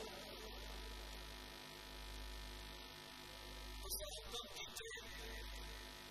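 Steady electrical mains hum from the microphone and sound system in a pause of the recitation, with a few short faint noises about four seconds in.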